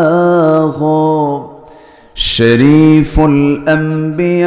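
A man's solo voice chanting a devotional naat, unaccompanied, in long held notes. It breaks off for about a second midway, then resumes.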